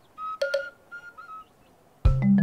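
Several short, high chirping calls from a bird, spaced irregularly, with a single sharp click about half a second in.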